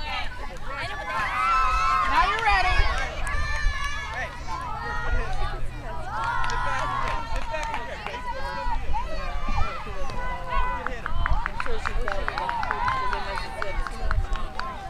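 Spectators and players shouting and cheering during a youth softball play, many high-pitched voices calling out at once, loudest in the first few seconds. A run of quick claps comes near the end.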